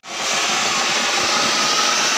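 Ground fountain fireworks spraying sparks with a loud, steady hiss.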